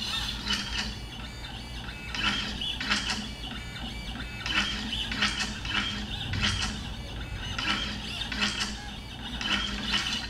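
Stepper motors of a Shapeoko three-axis CNC machine driven by a TinyG motion controller, whining through a quick series of short moves with brief pauses between them.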